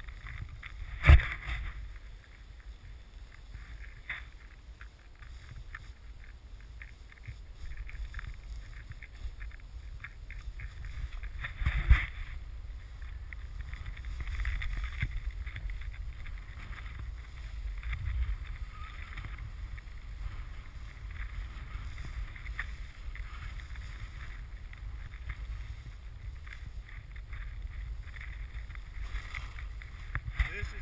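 Wind noise on a handheld pole-mounted action camera's microphone while snowboarding down through deep powder, with the board's steady hiss in the snow. Two sharp knocks stand out, about a second in and again near the middle.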